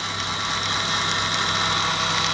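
Electric grinder motor running steadily as it spins a printer stepper motor used as a generator: a steady hum with a high, even whine.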